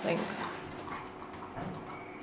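A young golden retriever making a short, faint vocal sound near the start as it stirs in its basket.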